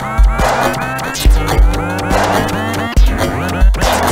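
Electronic music mixed for mono playback: a heavy kick drum and sustained bass notes under repeated quick rising pitch glides.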